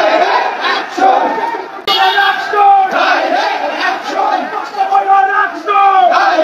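A marching crowd of men shouting slogans together, with long drawn-out syllables. There is a brief break about two seconds in.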